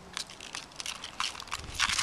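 Snow crunching under a Jack Russell terrier puppy's paws as it steps and paws at crusted snow, in an irregular run of short crackles that grows a little louder near the end.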